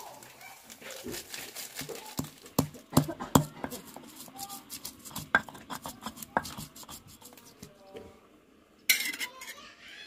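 Irregular clinks, knocks and scrapes of cooking utensils: a metal spatula in an aluminium wok and a stone pestle grinding on a stone mortar (cobek). The knocks come thickest about two to three and a half seconds in.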